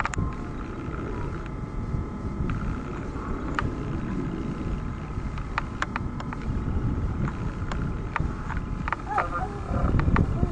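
Jet engine rumble with a steady high whine over it, broken by scattered sharp clicks.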